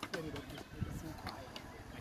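Faint talking from people at the skate park, with a few light knocks.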